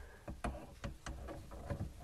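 Faint clicks and light knocks of a metal adjustable wrench being handled and fitted onto a shut-off valve, a handful of separate ticks over a low rumble.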